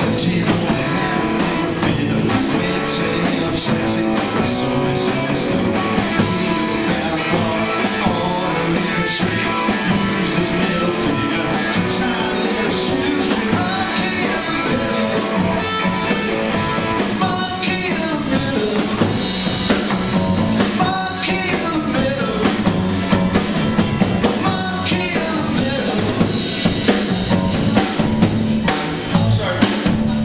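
Live rock trio playing: electric guitar, electric bass and drum kit, with the drums striking in a steady beat.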